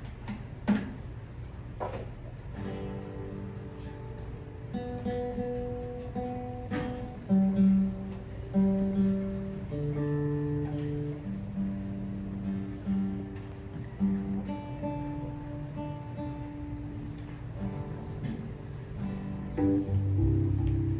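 Nylon-string classical guitar played solo: slow fingerpicked single notes and chords that ring on, after a few clicks in the first two seconds.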